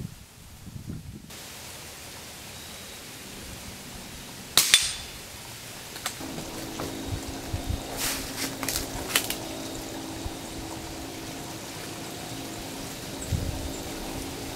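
Target shooting with a low-powered caseless .22 rifle at metal plinking targets: one sharp crack about four and a half seconds in, then a few light metallic clicks around eight to nine seconds in, over a steady low hum.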